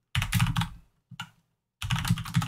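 Computer keyboard typing in quick flurries: a run of keystrokes, a short burst just past a second in, a brief pause, then typing again near the end.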